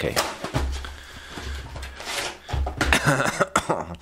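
Cardboard box of a frozen microwave meal being opened and the plastic tray slid out: rustling and scraping of cardboard, with a few sharp knocks from handling near the end.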